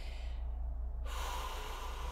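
A woman drawing a breath in through her mouth, a soft hissing inhale starting about a second in, taken in a pause while reading aloud.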